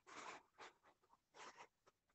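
Near silence with faint, irregular scratching strokes of writing, several short ones in a row.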